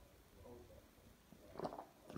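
Near silence with faint room noise, then a short handling noise about one and a half seconds in as a beer glass is lifted.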